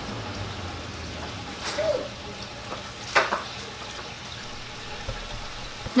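Steady background hiss over a low hum, with two brief soft clicks, one a little under two seconds in and one about three seconds in.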